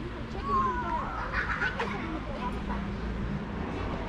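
Outdoor voices of people talking, with a brief louder call about half a second to two seconds in.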